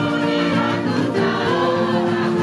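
Gospel choir of women singing together, holding long notes.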